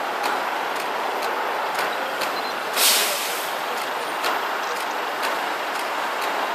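Steady city road traffic, with a short hiss of a bus or truck air brake about three seconds in. A faint ticking repeats about twice a second throughout.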